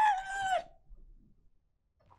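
A man's high-pitched, drawn-out laughing squeal of excitement, ending under a second in.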